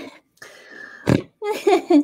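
A woman's voice: a faint breathy noise, then a short low throaty sound about a second in, then speech begins.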